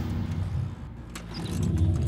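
Motor scooter engine running, its sound dipping about halfway through and picking up again near the end.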